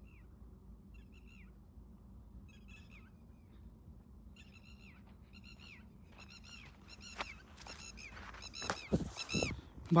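Birds calling in a run of short, arched calls, faint at first and growing louder over the last few seconds. A few heavy thumps near the end.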